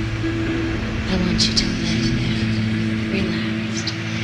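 Live band's synthesizers holding a low droning chord of several sustained notes, with short hissing sounds above it.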